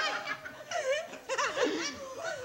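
People laughing heartily, in several short peals.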